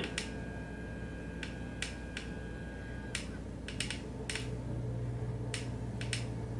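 About ten sharp clicks at uneven intervals from the push button of a Clearview FPV goggle receiver module being pressed to step through its menu, over a low steady hum. A faint high whine sounds for the first three seconds.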